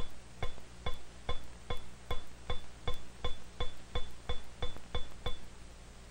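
A steel ball bearing bouncing on a glass plate: over a dozen sharp clicks, each with a brief high ring. The bounces come steadily closer together as the ball loses energy at each impact, then stop about five seconds in.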